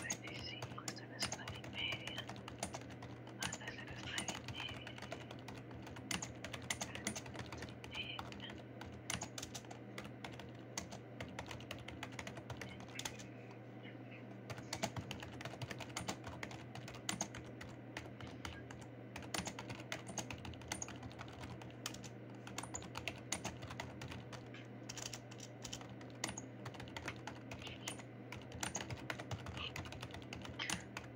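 Typing on a computer keyboard, heard through a video call: a steady run of quick key clicks with a short pause about halfway through, over a low steady hum.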